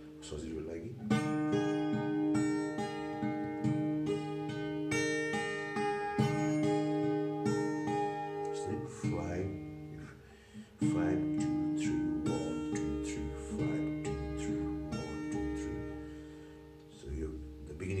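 Acoustic guitar with a capo at the sixth fret, fingerpicked in a repeating pattern of single notes that ring into each other. The picking breaks off briefly about nine seconds in and starts again strongly about two seconds later.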